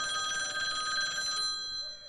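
Phone ringing: an electronic trill ringtone of several high steady tones, warbling fast for about a second and a half, then holding briefly and fading out near the end.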